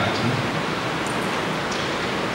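A steady, even hiss with no voice in it, holding a constant level.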